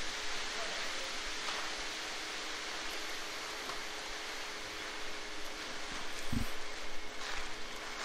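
Engines running steadily at a steady level, heard as an even hiss with a faint hum: the small engine of a Screed Demon power screed and a concrete truck. A brief low thump about six seconds in.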